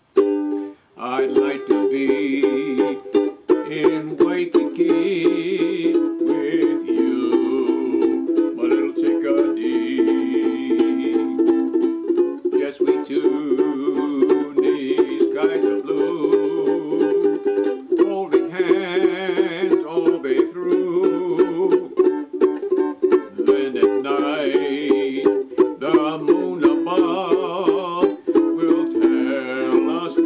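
Ukulele strummed rapidly through a tune, starting about a second in.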